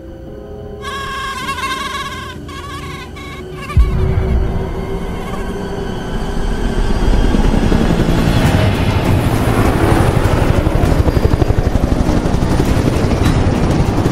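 Film soundtrack: music with held, wavering tones, a sudden deep boom about four seconds in, then a helicopter's rotor beating and growing louder under the music.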